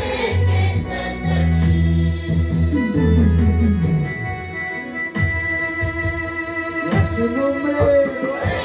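Electronic keyboard playing church music with an organ sound: a strong bass line for the first half, then held organ chords. A woman's singing voice comes in near the end.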